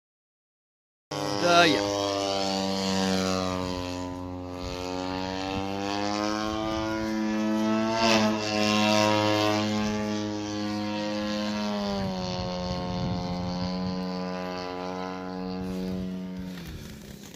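Radio-controlled model airplane's engine and propeller running steadily in flight, its pitch rising and falling as the plane flies past and turns, with a sharp peak about halfway through. The sound cuts in suddenly about a second in.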